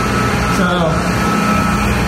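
Loud, steady hum of circulating pumps and their motors running in a mechanical pump room, with a thin, steady high-pitched tone over it.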